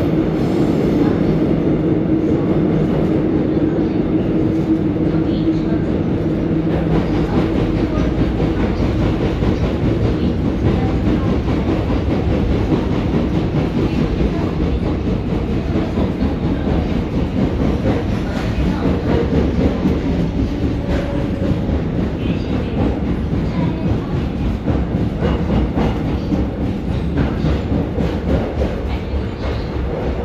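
Seoul Subway Line 1 electric train heard from inside the carriage running through a tunnel: a steady rumble with wheels clattering over the rails. A humming tone in the first several seconds fades, and the noise grows gradually quieter toward the end.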